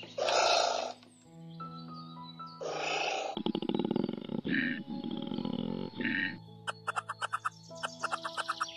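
Recorded wild-animal calls over background music: two short loud calls at the start, a long low pulsing call through the middle, then rapid clicking chatter near the end.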